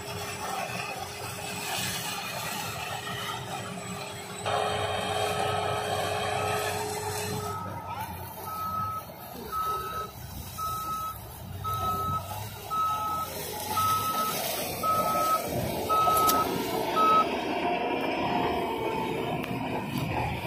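Sugarcane harvester and the tractor hauling its cane trailer running in the field: a steady machine din. From about five seconds in, a vehicle's warning beeper sounds about once a second, twelve beeps or so, then stops.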